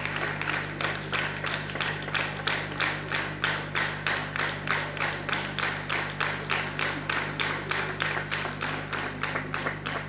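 Audience applause settling into clapping in unison, about four claps a second, fading out near the end over a steady low hum.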